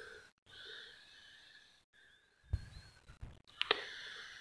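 Faint breathing close to the microphone during a pause in the narration, with a couple of soft low thumps in the second half.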